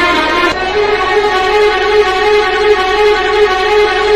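Background music: long held, sustained notes, moving to a new note about half a second in and holding it.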